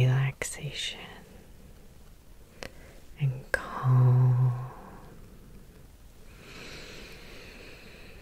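A woman's soft, low voice making short steady hums: two brief ones at the start and a longer one about three and a half seconds in, with a few sharp clicks between them and a faint breathy whisper near the end.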